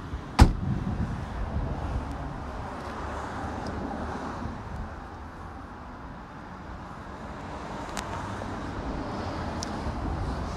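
The Skoda Citigo's tailgate shutting with a single loud slam about half a second in, followed by steady low outdoor background noise.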